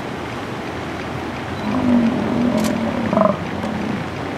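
An American bison's low, drawn-out grunt lasting about two seconds, starting a little before halfway, over steady background noise.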